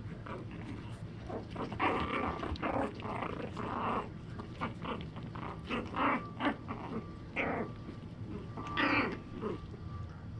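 Young puppies growling as they wrestle in play, in a string of short irregular bursts starting about two seconds in.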